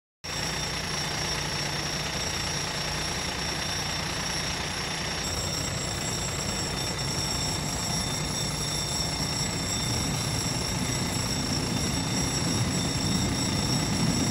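Level-crossing warning bell ringing steadily. Over the last few seconds the rumble of a ChME3 diesel shunting locomotive grows louder as it approaches and reaches the crossing.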